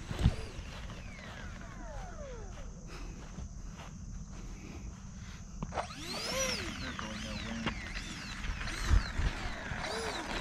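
Electric ducted fans of an E-flite A-10 Thunderbolt II RC jet whining. The pitch glides down over about three seconds, then from about six seconds in rises and falls in repeated surges as the jet starts its takeoff roll on the runway.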